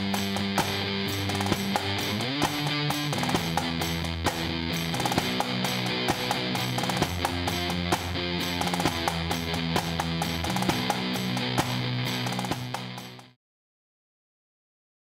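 Heavy instrumental rock: distorted electric guitar riffing over drums with regular cymbal hits, cutting off suddenly near the end into silence.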